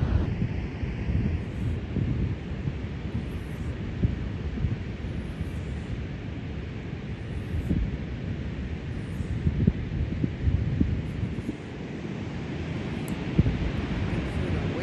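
Wind buffeting the microphone in irregular gusts, over a steady hiss of ocean surf breaking on the beach.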